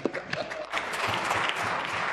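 Members of a legislature applauding, with a laugh at the start; the clapping swells into full applause about a second in.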